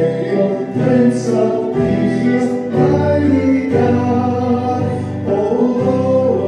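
Several voices singing a worship chorus in held notes, accompanied by acoustic guitar.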